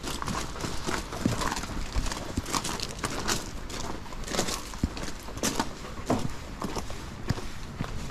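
Footsteps crunching on loose gravel as several people walk, an uneven run of steps about one to two a second.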